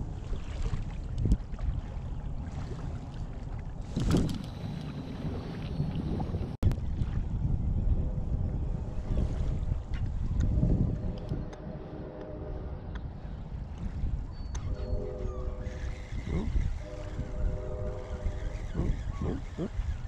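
Wind rumbling on the microphone at the water's edge, with one brief loud burst about four seconds in. From about eight seconds in, a steady droning hum of several tones comes and goes under the rumble.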